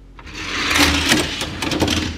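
Two die-cast Hot Wheels cars rolling fast down a plastic four-lane track, a rattle that builds after the release with a few sharp clicks near the end.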